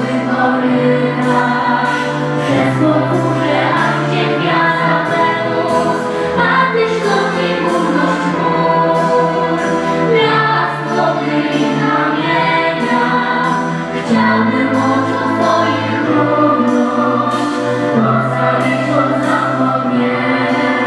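Student orchestra and choir performing live: the choir sings over strings, with steady sustained bass notes.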